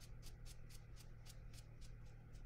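Faint, quick strokes of a brush dabbing across cold-pressed watercolor paper, about four short scratchy strokes a second, over a steady low hum.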